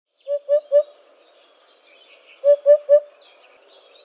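Eurasian hoopoe singing its low three-note 'oop-oop-oop' song twice, the phrases about two seconds apart, with faint higher chirps of other birds behind.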